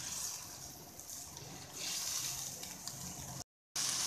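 Wet semolina halwa bubbling and sizzling in a pan as it is stirred with a wooden spoon, the water cooking off. A soft hiss that grows louder about two seconds in, then cuts out briefly near the end.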